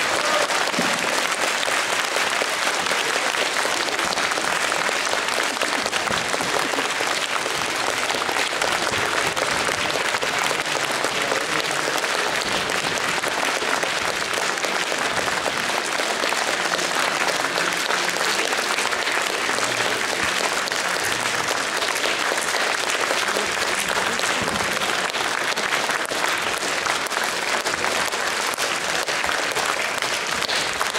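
Concert audience applauding: dense, even clapping that holds at a steady level.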